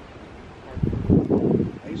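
Steady outdoor background noise with light wind on the microphone, then a person speaking loudly close to the microphone from about a second in.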